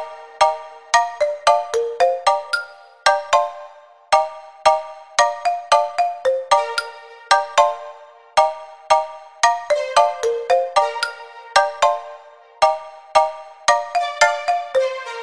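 Instrumental reggaeton beat at 113 bpm in D major, down to a melody of short, quickly decaying synth notes, about three or four a second, over a held lower note, with no kick drum or bass.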